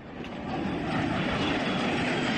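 A loud rushing rumble like a jet or rocket engine, used as a transition sound effect. It fades in and builds over about the first second, then holds steady.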